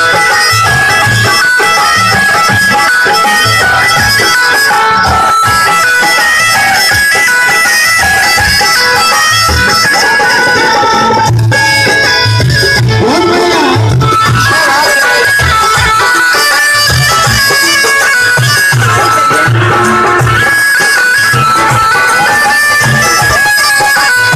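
Loud Rajasthani folk dance music: a reedy melody of steady held notes, bagpipe-like, over a repeating drum beat.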